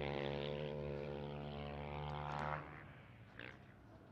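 Distant motocross bike engine held at steady revs on one pitch, fading slightly and stopping about two and a half seconds in.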